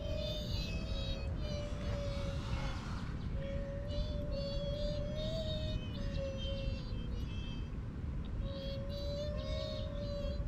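A thin, wavering singing-like hum held in three long phrases, with clusters of high chirping notes above it, over a steady low rumble of wind. It is what is presented as the duendes 'singing' after the fruit was left.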